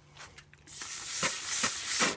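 Rubbing alcohol sprayed onto a hazy plastic headlight lens and 180-grit sandpaper on a sanding block starting to scrub the wet lens: a steady hiss from about a second in.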